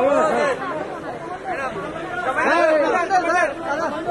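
Chatter of several people talking and calling out over one another, with the loudest burst of voices in the second half.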